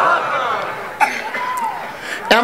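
A man's voice through a stage microphone, without words: a falling vocal sound, then a sudden short burst like a cough about a second in, trailing into a held, falling tone.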